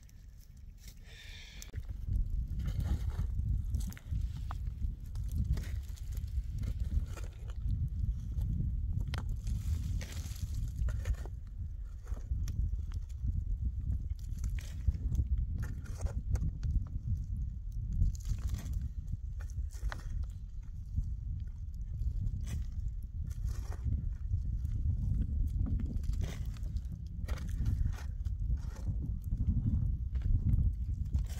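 Scattered knocks and scrapes of hand tools working stony earth, branches and wood, over a steady low rumble that sets in about two seconds in.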